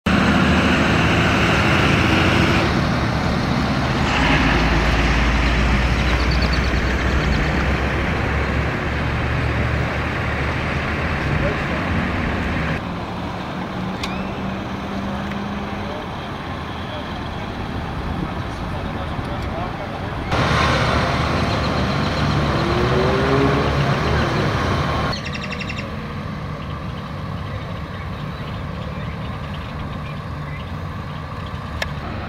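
Road traffic and running vehicle engines with a steady low hum, and voices in the background. The sound changes abruptly several times.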